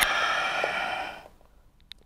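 A person exhaling long and audibly in a breathy rush, a controlled yoga out-breath held in downward-facing dog, fading out a little over a second in.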